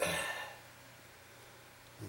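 A brief breathy sound from a man's throat right at the start, fading within half a second, then quiet room tone with a faint steady low hum.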